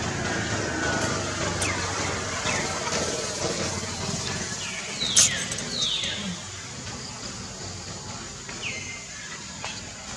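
Outdoor background with a murmur of voices, and a few short, high, falling squeaks: two close together about halfway through, with a sharp click at the first, and one more near the end.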